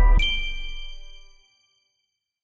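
Closing logo jingle of a TV channel: a final bright chime-like ding struck just after the start over a deep bass tone, ringing out and fading away within about a second and a half.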